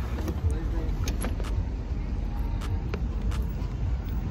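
Steady low rumble of a car driving, heard from inside the cabin, with a few light clicks.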